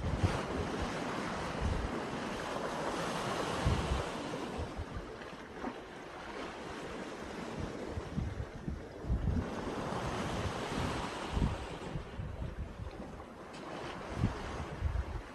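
Small sea waves washing in at the water's edge, their hiss swelling and fading twice, with wind buffeting the microphone in irregular low thumps.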